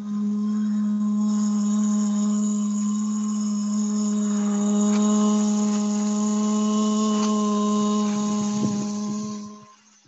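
A woman humming one long, steady low note, which fades out near the end.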